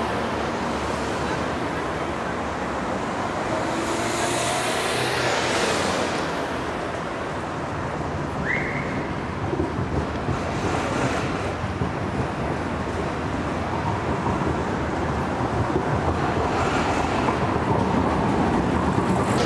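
Steady urban street noise of distant road traffic, with a single brief rising chirp about halfway through.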